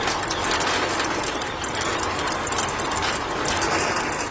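A miniature DIY concrete mixer running: its small electric motor and gears turn the drum while wet concrete slurry churns inside, making a steady gritty rattle.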